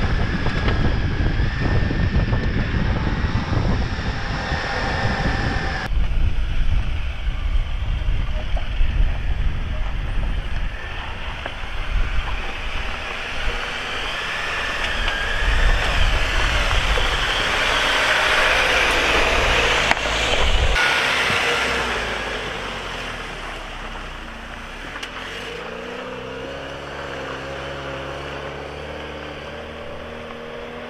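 Jeep Wrangler JL driving slowly on a rocky dirt trail: engine running under load with tyres rolling and crunching over dirt and rock, heavy rumble at first. Near the end the engine is heard from farther off, its note rising as it pulls.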